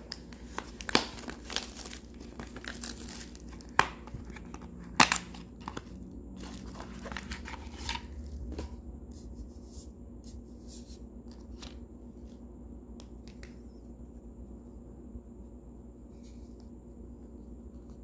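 Trading card pack wrapper being peeled and torn open by hand, with many sharp crackles and snaps for the first eight seconds or so. After that, quieter handling of the card stack with a few light clicks.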